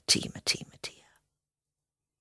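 A woman's soft voice for about the first second, with strong hiss on the consonants, then it stops abruptly into dead silence.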